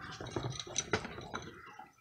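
A steel food can being picked up and turned in the hand: a string of light clicks and knocks with some rustling.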